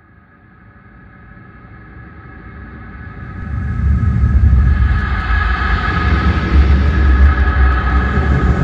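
Cinematic logo-reveal sound design: a deep rumble with sustained droning tones above it swells steadily from faint to loud over about four seconds, then holds loud.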